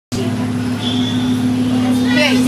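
School bus engine and road noise, heard from inside the cabin as a steady low drone.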